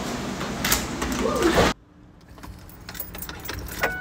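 Clattering, jingling movement noise from someone on the move, cut off suddenly about two seconds in by a much quieter car interior with a few faint clicks.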